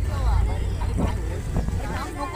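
Wind buffeting the microphone as a heavy low rumble that eases off in the second half, under the voices of people talking.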